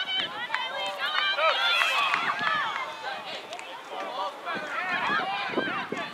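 Many high-pitched children's and adults' voices shouting and calling over one another on an outdoor field, with no clear words.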